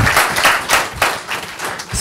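Audience applauding, the clapping thinning out and dying down toward the end.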